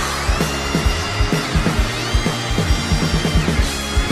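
Live rock band playing an instrumental passage: a fast, even drum beat under electric guitar, whose high notes slide up and down in pitch.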